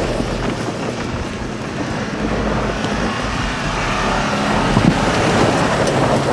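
Subaru XV's four-cylinder boxer engine and tyres as the car slides sideways on snow, its wheels spinning and spraying snow in a steady rushing noise that grows a little louder near the end.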